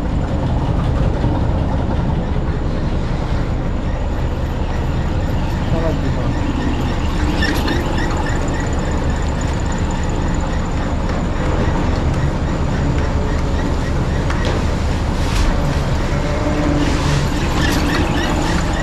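Motor-driven stone edge-runner mill running: a large vertical millstone rolling round its circular stone bed, a loud, steady mechanical noise with a few brief clicks.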